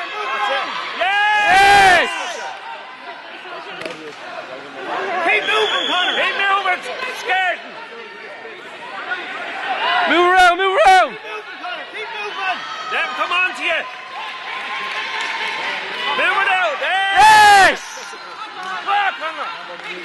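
Men shouting, several voices overlapping, with the loudest shouts about two seconds in and again near the end.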